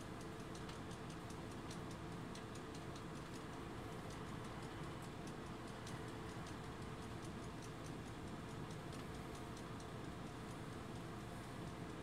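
Faint, even ticking, a few ticks a second, over a steady low hum.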